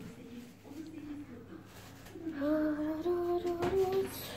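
A girl humming a few long, held notes without words. The humming is faint at first, louder in the second half, and steps slightly upward in pitch. A short click comes near the end.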